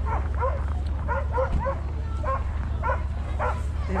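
Harnessed sled dogs barking and yipping at a race start, a quick string of about ten short, high calls in four seconds.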